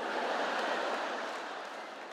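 A large theatre audience laughing and clapping, the sound slowly dying away toward the end.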